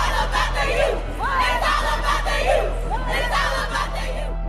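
A group of young women shouting a cheer together in three bursts, over steady background music.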